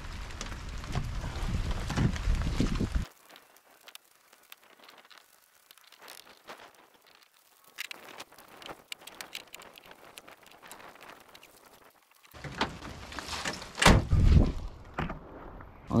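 Rain and wind noise on the microphone that cuts off abruptly about three seconds in, leaving a much quieter stretch of faint, scattered raindrop ticks. The louder noise comes back near the end with a couple of sharp knocks.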